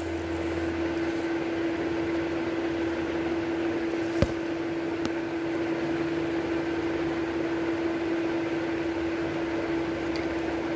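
Steady machine hum with one constant pitch, and a single sharp click about four seconds in.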